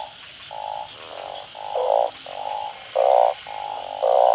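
A chorus of burrowing narrow-mouthed frogs (อึ่ง) calling from rain-flooded grass, in the breeding chorus that follows heavy rain: low buzzing croaks about half a second long, one after another at one or two a second. The loudest croak comes about three seconds in. Behind them runs a steady, fast, high-pitched pulsing.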